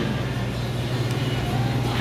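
Steady low hum with a faint even hiss: background room noise in a restaurant dining room.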